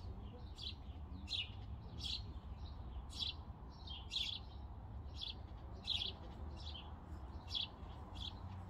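A small bird chirping repeatedly, short high chirps about twice a second, over a low steady rumble.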